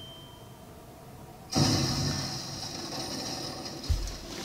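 Soundtrack of an animated episode: quiet at first, then about a second and a half in a sudden hissing, noisy sound effect that fades slowly, with a low thump near the end.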